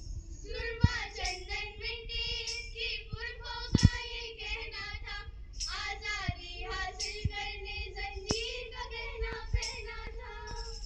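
A group of schoolgirls singing in unison through microphones, starting about half a second in. Sharp taps, probably from a hand-held tambourine, fall roughly once a second; the loudest comes near four seconds in.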